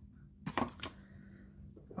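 Quiet room with a faint steady hum and a few soft taps about half a second in.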